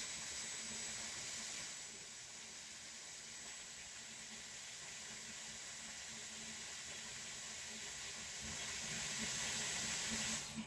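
Dyson Airwrap hot-air styler running steadily, its fan blowing a continuous airy hiss with a faint high whine as it dries a section of hair wound on the barrel.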